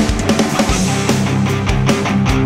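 Instrumental post-metal band playing a loud, heavy passage: distorted electric guitars over a steady beat of drum hits.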